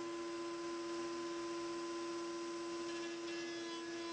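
Router-table router and dust collector running steadily with the slot-cutting bit not yet in the wood: a faint, even hum made of a few fixed tones.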